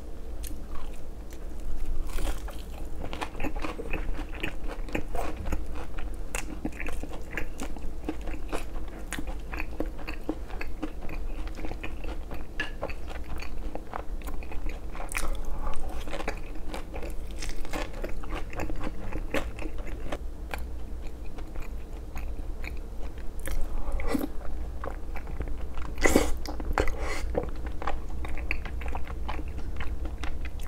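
Close-miked eating: biting and chewing crisp Korean fried food (twigim), with sharp crunches, crackles and wet chewing. A few louder crunches stand out among the steady chewing.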